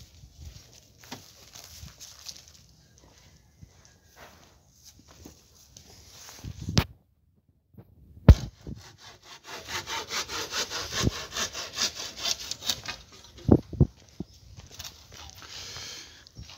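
Wood being sawn by hand: a quick, rhythmic run of rasping saw strokes in the second half, with a couple of sharp knocks. Before that, only faint scattered handling and footstep sounds, and the sound drops out for about a second in the middle.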